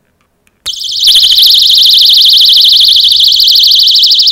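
DefendMe handheld personal security alarm sounding after its half-circle pull piece is drawn from the base. It gives a very loud, high-pitched, rapidly warbling tone that starts about two-thirds of a second in and holds steady.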